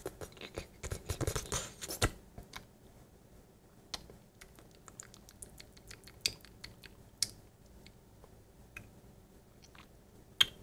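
Close-miked mouth sounds of a person eating ice cream: a dense run of wet smacks and lip clicks in the first two seconds, then scattered single clicks.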